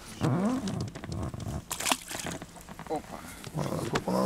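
Short, indistinct voice sounds from a man, a few murmurs and grunts rather than clear words, over low handling rumble. One short sharp noise comes about two seconds in.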